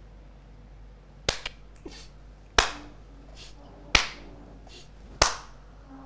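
Slow hand claps: four loud, sharp claps about a second and a quarter apart, with a few fainter claps between them.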